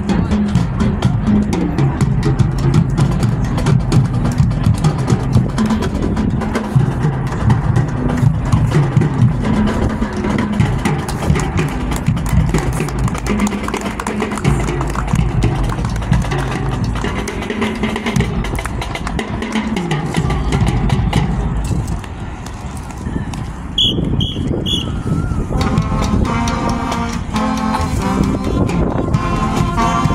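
High school marching band playing as it marches: low brass over a drum beat for most of the time, then a short lull with three short high-pitched tones, after which the horns take up a higher phrase near the end.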